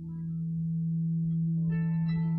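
Ambient music: a steady, low sustained tone with overtones, growing a little louder, with plucked guitar notes coming in near the end.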